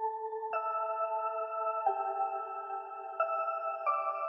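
Electronic music intro: sustained synthesizer chords with no beat, moving to a new chord about every second and a half.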